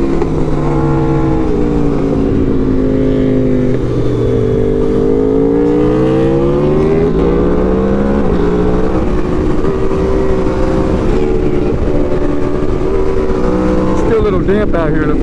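Aprilia RSV4 Factory's V4 engine through a Yoshimura exhaust, heard from the rider's seat over wind rush. The engine note falls over the first few seconds, climbs again about five to eight seconds in, then holds fairly steady.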